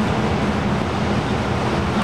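Steady rushing noise with a fluctuating low rumble from wind on the microphone, over a faint steady hum.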